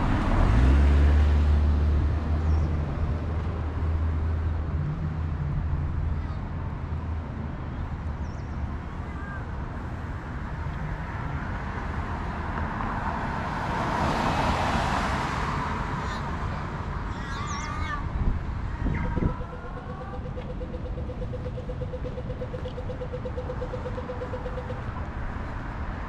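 Street traffic at an intersection: a car's engine hums low close by for the first few seconds, and another vehicle passes about halfway through. A few short chirps follow, then a steady mid-pitched hum holds for several seconds near the end.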